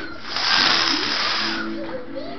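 Venetian blinds being pulled up by their cord: the slats clatter and the cord rasps for about a second, starting about half a second in.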